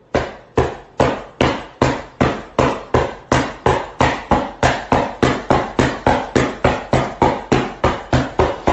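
A steady run of sharp thumps, each ringing briefly. They begin just after the start at about two and a half a second and speed up slightly.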